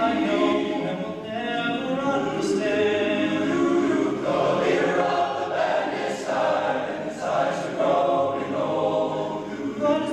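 Large men's a cappella choir singing slow, held chords in close harmony.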